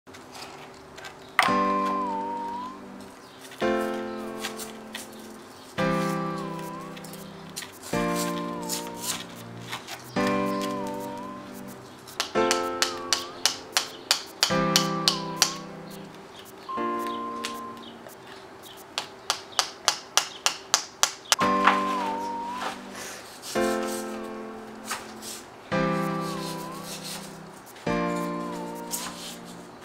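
Background music: a chord struck about every two seconds and left to ring out, with a short melody line above it and two runs of quick repeated notes in the middle.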